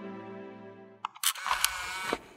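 A held music chord fading out, then about a second in a camera-shutter sound effect: a quick run of sharp clicks.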